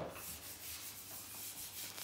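Light hand sanding with 1200-grit abrasive paper over a shellac coat: faint, repeated rubbing strokes that take off the small rough nibs between coats.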